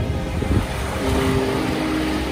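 Small waves washing up on a beach, with wind rumbling on the microphone. Soft music sits underneath, its held notes growing clearer in the second half.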